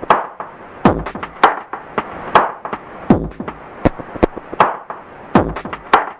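Electronic music of sharp percussive hits, roughly one or two a second at an uneven spacing, some carrying a deep low thud.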